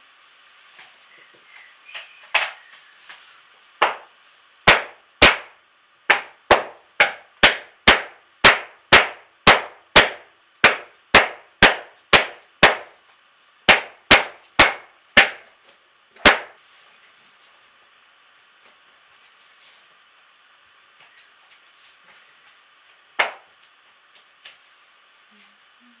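Sharp clanging strikes, like metal being hit: a run of about two dozen at roughly two a second, then a pause of several seconds, a single strike, and another run starting at the very end.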